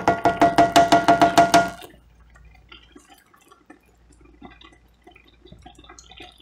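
A black nylon slotted spoon knocking rapidly against a cast iron skillet, about a dozen ringing strikes in under two seconds. Then only faint, irregular popping as thickening onion gravy bubbles in the pan.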